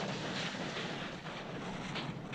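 Mittened hands scraping and scooping snow, over a steady hiss of wind on the microphone.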